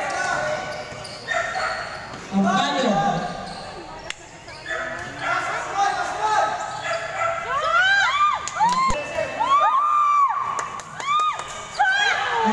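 Live basketball game: voices calling out on the court, then, in the second half, a quick run of sneaker squeaks on the court floor mixed with ball bounces.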